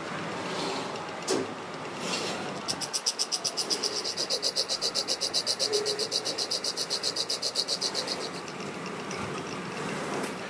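A grinding wheel working a spinning metal part and throwing sparks: a loud, high-pitched scraping that pulses about eight times a second, starting about three seconds in and stopping about eight seconds in. Steady running of the workshop machines under it.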